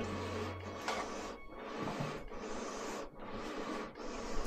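Pair of hand-worked wooden bellows blowing air into a clay forge: long rhythmic whooshes of air, about one every second and a half.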